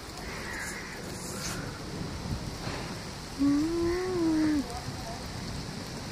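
Steady rain falling, heard as an even hiss of noise. For about a second in the middle, a person's voice sounds one drawn-out hum that rises and falls in pitch.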